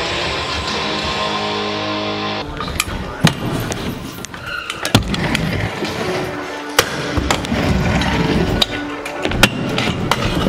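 Music throughout. From about two and a half seconds in, wheels roll on a wooden ramp, with several sharp clacks of a deck striking the ramp and its metal coping.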